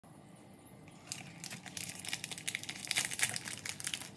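Plastic wrapper of a Dark Fantasy biscuit pack crinkling as it is handled and slit open with a knife, a dense run of sharp crackles starting about a second in and growing louder.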